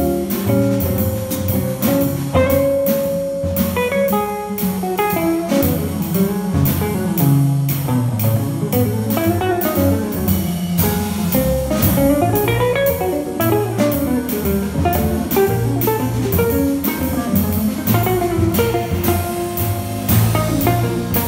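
Jazz trio playing live: an electric archtop guitar plays a melodic line over plucked upright double bass and a drum kit keeping steady time.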